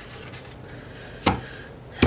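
A single thump about halfway through as a sheet of planner stickers is set down on the tabletop, with faint room noise around it.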